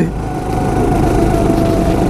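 Go-kart engine running steadily at speed, a single nearly level tone that sags slightly, over a constant haze of wind and track noise.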